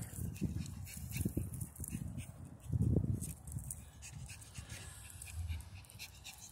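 Small dog panting, over a low rumbling noise that swells briefly about three seconds in.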